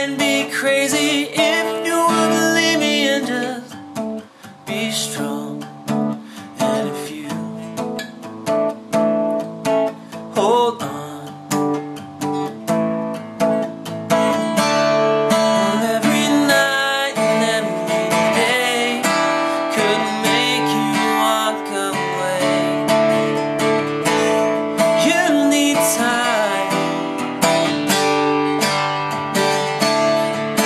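Acoustic guitar strummed, with a man singing over it in stretches. The strumming becomes fuller and steadier about halfway through.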